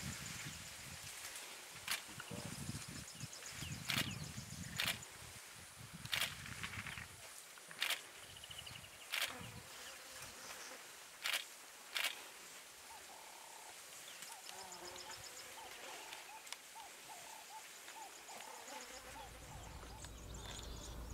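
African elephants pushing through dense bush: sharp snaps of breaking branches every second or two over the first twelve seconds, with birds calling in the background, more plainly in the second half.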